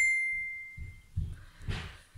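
A phone notification chime: one bright ding that starts suddenly and fades out over about a second, followed by a brief rustle.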